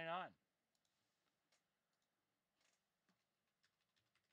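A few faint, scattered clicks in near silence: trading cards and their plastic holders being handled on a table.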